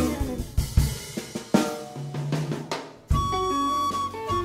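Jazz-rock quartet of recorder, electric guitar, double bass and drum kit: the drums play a break of snare, bass-drum and cymbal hits under guitar chords and a bass line, then about three seconds in the full band comes back in with the recorder holding one long high note.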